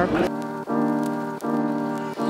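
Background music: sustained keyboard chords, changing about every three-quarters of a second.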